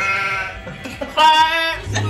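A person's voice making two drawn-out, wavering, bleat-like vocal sounds: one at the start and a louder one about a second in.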